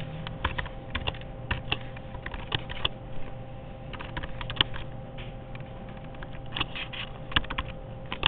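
Irregular light clicks and taps, a few a second, like keys being pressed, over a steady background hum.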